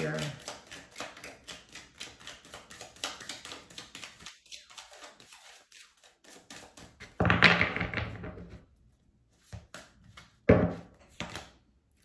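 A tarot deck being shuffled by hand: a rapid run of papery card clicks for about the first four seconds, then a pause.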